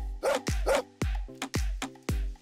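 A small dog barking twice, 'woof woof', over an upbeat music track with a steady kick-drum beat of about two beats a second.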